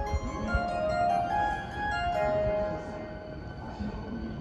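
Station platform approach melody: a short electronic tune of held notes that signals a train about to arrive, here ahead of the announcement for the Takarazuka-bound express.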